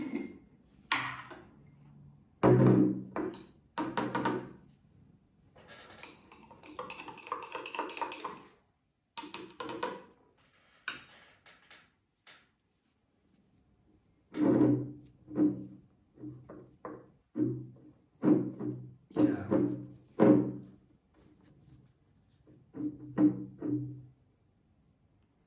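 Clinks and knocks of a glass jar and its metal lid being handled on a table, with a bright glassy ping about ten seconds in, and a stretch of pouring water. In the second half, background music of short plucked notes.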